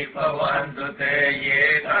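A man's voice in Buddhist chanting, drawing out long held syllables with short breaks between them.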